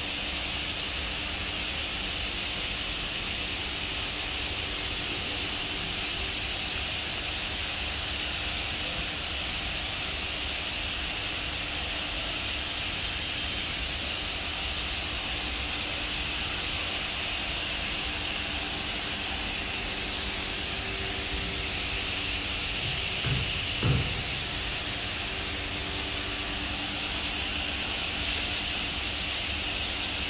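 Steady mechanical hum and hiss from the workshop, with two short thumps about three-quarters of the way through as large plywood panels are handled on the press bed.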